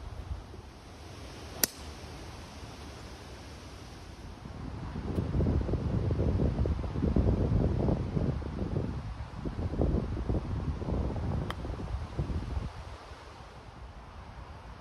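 A single sharp crack about a second and a half in, a golf club striking the ball. This is followed by gusty wind buffeting the microphone as a low, surging rumble for several seconds. Near the end of the gusts there is a fainter click of another club strike.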